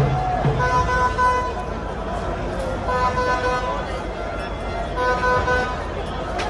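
A horn sounding three short, steady-pitched blasts about two seconds apart over the noise of a large crowd.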